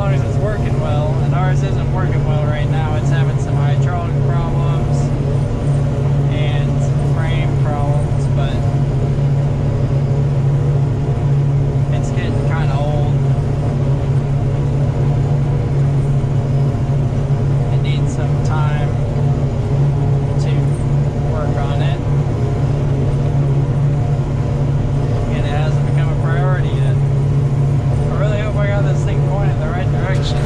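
John Deere 5830 self-propelled forage harvester running steadily under load while chopping corn for silage, heard from inside its cab as a loud, even drone. A voice comes and goes over it every few seconds.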